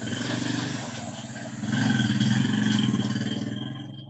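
Motor engine noise coming through a video-call microphone: a rumble that swells again about halfway through and dies away near the end.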